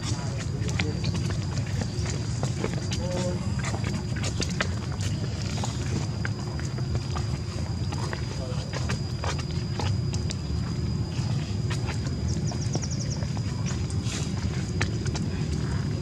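Faint, indistinct voices over a steady low rumble, with a thin steady high-pitched tone and scattered small clicks; a brief rapid ticking comes about three seconds before the end.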